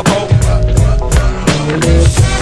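Boom-bap hip-hop beat playing without rapping: heavy kick drum and bass under sharp snare and cymbal hits in a steady rhythm.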